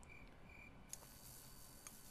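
Near silence, with a few faint, evenly spaced high chirps in the first half second, then a faint hiss with a couple of soft clicks.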